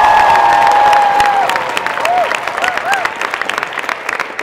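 Crowd applauding and cheering: dense clapping throughout, with a long, held cheer for the first second and a half and a few short whoops in the second half.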